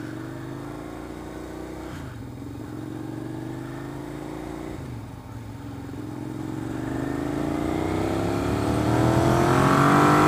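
Suzuki SV650S's V-twin engine accelerating through the gears: the revs climb, drop at upshifts about two and five seconds in, then rise steadily for longer in the next gear, growing louder near the end.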